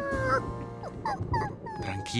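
A cartoon monkey's frightened whimpering: a string of short, wavering, high cries that rise and fall, the last one held longer, over soft background music.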